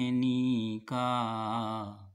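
A man singing solo with no accompaniment, in Hindi, in a slow chant-like style. He holds a long note, breaks briefly just before a second in, then sustains the word "ka" with a wavering pitch that fades away near the end.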